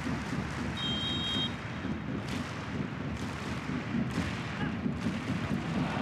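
Football stadium crowd noise, a steady rumble, with one short referee's whistle blast about a second in, signalling the free kick to be taken.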